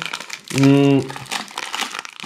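Clear plastic film wrapped around rolled baking sheets crinkling as the rolls are handled, with one short held vocal sound about half a second in.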